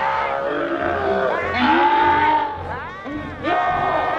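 A movie ghost creature's shrieking vocal effect: three or four shrill, wavering cries in a row, each sliding up and down in pitch.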